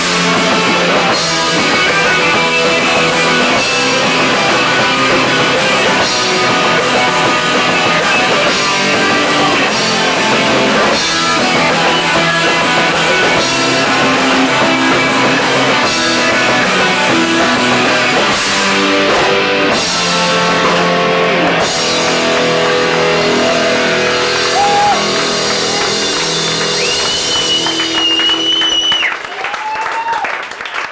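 A hardcore punk band playing live, with distorted electric guitars, bass and drums at full volume. Near the end a high whine is held for about two seconds, and then the song stops.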